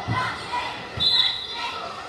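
Basketball bouncing on a hardwood gym floor, two thuds about a second apart, in an echoing gym full of spectators' voices. A brief high squeal sounds about a second in.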